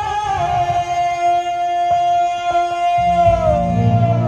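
Sambalpuri melody song played live over a PA: a singer holds one long sustained note, and the band's bass and drums come in with a steady beat about three seconds in.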